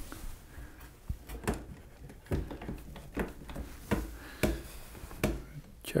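Irregular wooden knocks and taps, about nine short ones spread over several seconds, from a temporary wooden support under the benchwork frame being adjusted while the frame is brought level.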